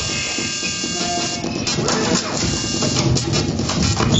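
Free-improvised electroacoustic music from double bass, laptop and live electronics: a dense, noisy, rattling texture with thin held tones and scattered clicks.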